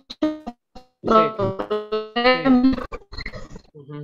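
A voice coming through a video call, breaking up into choppy, robotic-sounding fragments like Robocop, with clicks and oddly steady buzzing tones: the sign of a weak internet connection.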